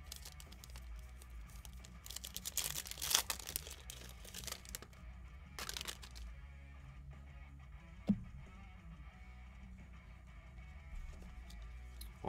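Crinkling and tearing of a trading-card pack wrapper as it is torn open and the cards are slid out, in a few short crackly spells over faint background music.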